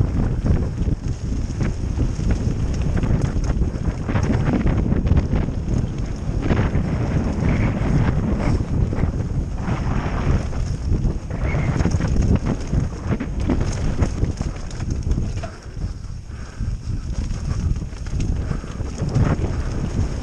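Mountain bike descending a rough dirt trail at speed: wind buffeting a helmet-mounted camera over tyre noise, with a constant stream of knocks and rattles from the bike over the rough ground. The noise eases briefly about three-quarters of the way through.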